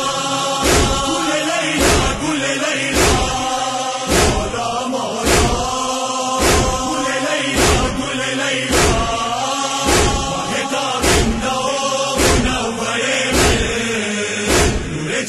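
Men's voices chanting an Urdu noha, a Shia mourning lament, together in unison. Their chest-beating (matam) lands in time with the chant, a sharp strike a little under once a second.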